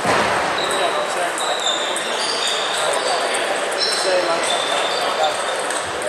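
Busy table tennis hall: a steady babble of many voices, with table tennis balls bouncing and clicking on tables and bats from the matches all around.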